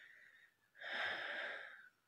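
A person breathing out heavily close to the phone's microphone: a noisy, breathy exhale lasting about a second, starting just before the middle, after a fainter breath at the start.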